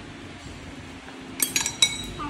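Tableware clinking against a ceramic bowl: a quick cluster of sharp clinks about one and a half seconds in.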